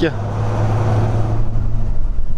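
Engine of a 4x4 SUV running steadily under load as it drives up a sand slope, a low even drone with tyre and dust noise.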